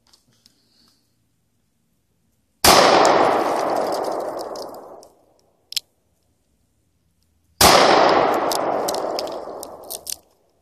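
Two gunshots about five seconds apart, fired at a cinder block. Each is a sharp crack followed by a long echo that fades over about two seconds.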